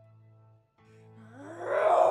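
A zombie moan that rises in pitch and grows loud near the end, over a steady low background music drone.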